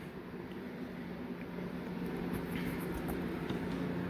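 Steady low hum with a few faint ticks and taps.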